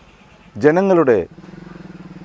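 A man says a short word, then a small engine starts to be heard in the background about halfway through: a steady low hum with a fast, even pulse that keeps running.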